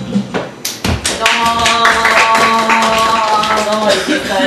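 Entrance music with a live audience clapping, greeting a comedy duo as they come on stage; the clapping starts about half a second in and runs on under sustained musical notes.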